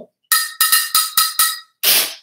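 A handleless frying pan struck with a drumstick: about seven quick strikes, each a short metallic ring at the same pitch. The strike near the end is the loudest.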